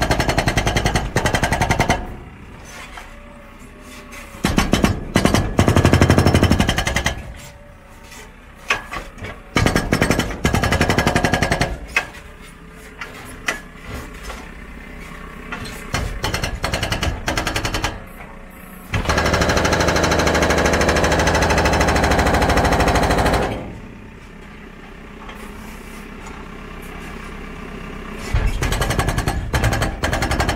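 JCB hydraulic breaker on a backhoe loader hammering a concrete bridge deck in bursts of rapid blows, the longest lasting about four seconds past the middle. Between bursts the loader's diesel engine runs more quietly.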